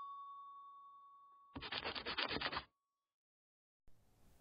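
A chime's ringing tone dies away. Then a scratchy rubbing sound with quick uneven strokes, about a second long, cuts off suddenly.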